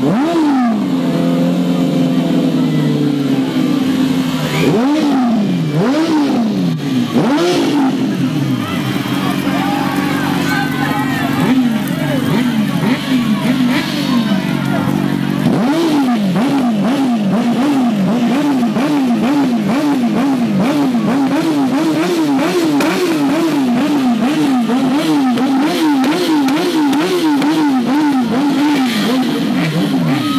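A motorcycle-like engine revving up and down again and again over a low steady drone. The revs are uneven at first and become fast and evenly repeated about halfway through.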